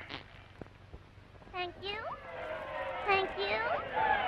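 Squeaky, high-pitched cartoon vocal sounds with no words: after an almost quiet first second and a half, a couple of short rising squeals, then more squeals near the end over a held note.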